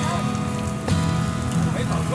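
Busy street-stall ambience: a steady hiss with a low hum and faint music and voices underneath, and a single sharp knock about a second in.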